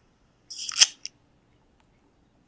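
Brief handling noise: a short, sharp rustling scrape about half a second in, ending in a click, as a hand moves the phone.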